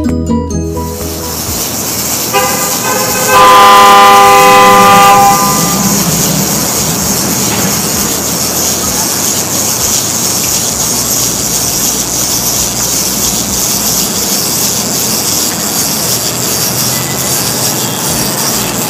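City street traffic noise with a vehicle horn sounding a few seconds in, held for about three seconds and louder in its second half; steady traffic hiss follows.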